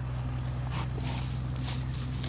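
A steady low hum with faint scattered taps.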